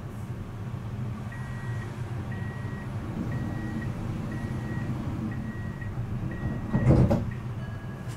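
Siemens Avenio tram standing at a stop, its equipment giving a steady low hum. Six short high beeps sound evenly about once a second, the door-closing warning, and end in a thud near the end as the doors shut.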